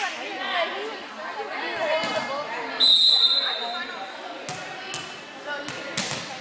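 Referee's whistle blown once, a steady shrill tone lasting about a second and a half, starting about three seconds in: the signal for the server to serve. A few thuds of a volleyball bounced on the gym floor follow, over the voices of people in the gym.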